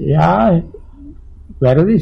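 A man's voice speaking: one drawn-out word, a short pause, then talk resumes near the end.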